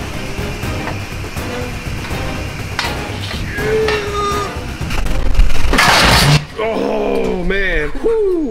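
Background music under a man's breathless exclamations. A loud hiss-like "shh" about five seconds in is followed by an "ahh?" and a relieved "whoo".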